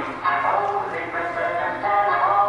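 High-pitched wordless vocal sounds from a stage performer, with the pitch bending up and down.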